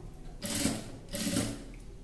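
Electric sewing machine running in two short bursts of stitching, about half a second each, tacking a strip of piping down onto the fabric.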